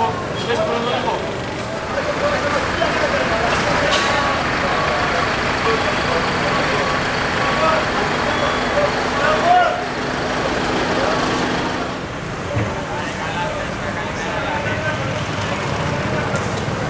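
Street traffic: motor vehicles running and passing, with people's voices mixed in. A steady low engine hum sits under it for several seconds in the middle.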